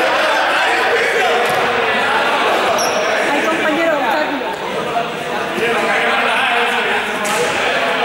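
Many young people talking over one another, with no single voice standing out, in a large echoing sports hall. A few short knocks or thuds sound now and then.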